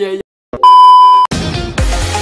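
A loud, steady electronic beep at one pitch, lasting about two-thirds of a second, after a man's voice cuts off. It is followed straight away by electronic intro music with a steady beat.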